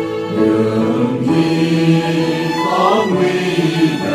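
A choir singing a Vietnamese Catholic offertory hymn, with a line gliding up in pitch about three seconds in.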